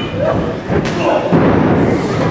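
A body hitting the wrestling ring mat with a sharp thud just before a second in, over voices shouting from the crowd.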